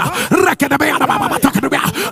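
A man's voice praying rapidly in tongues: short, rising-and-falling syllables, about four a second.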